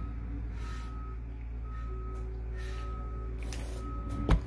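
Reversing alarm beeping about once a second, each beep a steady tone lasting about half a second, over a low steady rumble.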